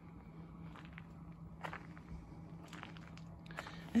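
Faint footsteps on gravel, a few uneven steps, over a faint steady low hum.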